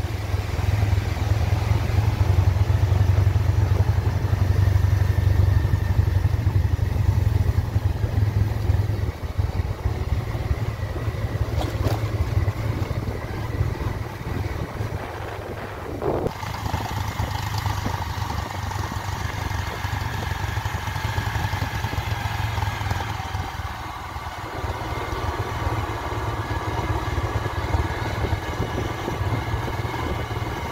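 Motorcycle engine running as the bike rides along, heard from on the bike, with a heavy low rumble of wind on the microphone for the first nine seconds or so. A couple of brief knocks come near the middle.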